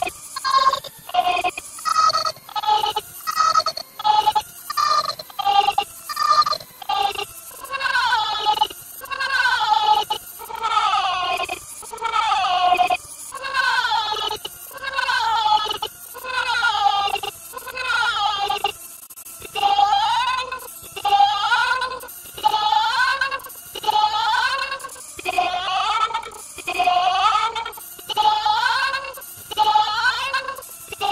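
A cartoon voice, the Annoying Orange's, heavily distorted by pitch-warping audio effects and looped. First come quick repeated syllables about twice a second. From about eight seconds in, longer syllables follow about once a second, each wavering up and down in pitch.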